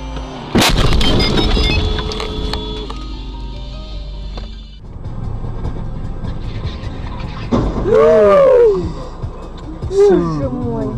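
A sudden loud crash of a car collision about half a second in, over music from the car's radio that cuts off just before the five-second mark. Near eight seconds a loud shout rises and falls.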